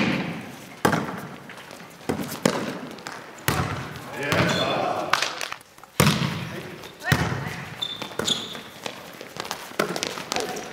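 A volleyball being struck in play in a large gymnasium: about half a dozen sharp slaps of hands on the ball, a second or more apart, each ringing on in the hall's echo. Players' voices call out between the hits.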